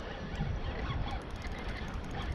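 Outdoor shoreline ambience: wind rumbling on the microphone, with a few faint honking bird calls.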